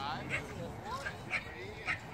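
A dog barking, three short barks in the space of two seconds.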